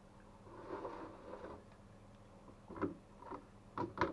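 Brine sloshing and dripping as a hand fishes a pickled cucumber out of a wooden bowl, then four short, sharp knocks as the wooden bowl is shifted on a stainless steel worktop, the last knock the loudest.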